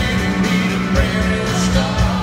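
Live country-pop band playing, with acoustic guitar, steady bass and a regular drum beat, and a faint sung phrase in between. It is recorded loud from the audience.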